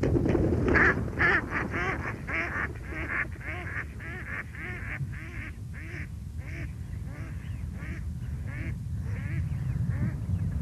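Mallard ducks quacking in a rapid run of calls, about three a second, loudest at the start and slowly fading, over a steady low rumble.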